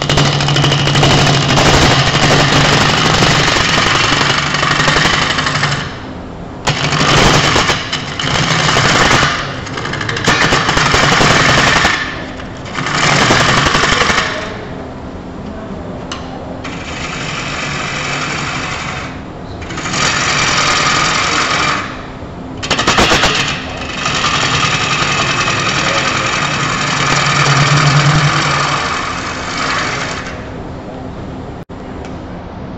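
Wood lathe running with a turning tool cutting into the spinning wooden vase blank, giving a loud, rough, chattering scrape in about eight separate passes of one to six seconds each. Between the cuts the lathe's steady low hum carries on.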